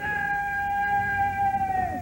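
A single long, high note held steady, with a slight fall in pitch just as it cuts off near the end.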